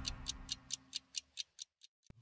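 Ticking clock sound effect in a TV programme's closing ident, about four to five ticks a second, growing fainter and stopping just before the end, over the last of the theme music dying away.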